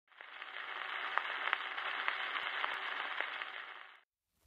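Surface noise of a 78 rpm shellac record with the needle in the lead-in groove: a steady faint hiss with scattered clicks and crackles, fading in just after the start and fading out near the end.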